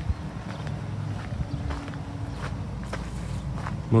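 Footsteps walking on a sandy dirt path, about two or three steps a second, over a low rumble on the handheld microphone.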